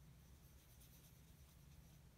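Near silence: a paintbrush softly scratching as it dabs watercolor paint onto paper, faintest in the middle, over a low room hum.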